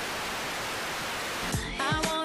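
Steady TV-static hiss, giving way about one and a half seconds in to music with a beat.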